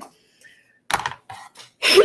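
A few short rustles and handling noises as a length of plastic craft mesh is moved across a cutting mat, starting about a second in, after a near-silent pause.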